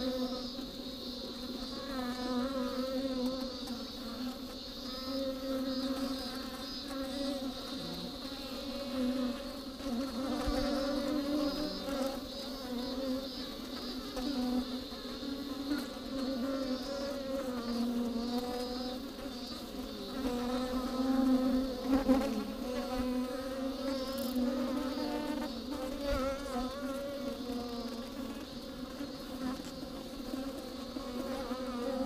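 Many honeybees buzzing inside a hollow tree trunk: a steady low drone that wavers in pitch and swells and fades, loudest a little after twenty seconds in.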